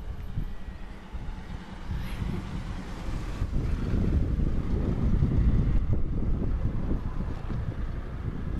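City minibus engine rumbling as the bus approaches and pulls up close, growing louder over the first few seconds, with wind on the microphone.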